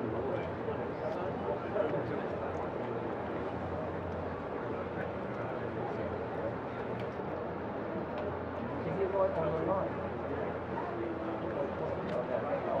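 Large aircraft flying past, a steady drone with no rise or fall.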